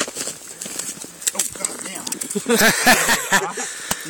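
Men's voices laughing and talking, loudest past the middle, with a few sharp knocks.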